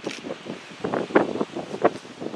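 Wind buffeting the microphone in irregular gusts, several short loud puffs a second apart.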